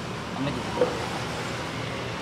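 Steady background noise with a faint, brief voice about a second in.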